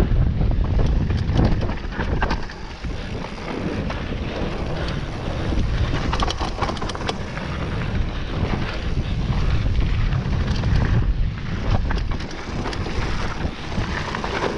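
Wind buffeting the microphone as a mountain bike descends a dirt singletrack at speed, with a steady rumble of tyres on dirt and frequent short clicks and knocks from the bike rattling over bumps.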